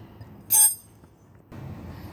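A single short metallic clink with a brief high ring about half a second in: a steel spanner knocking against metal.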